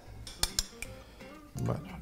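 A few sharp metallic clinks of cutlery against a dish, over soft acoustic guitar background music.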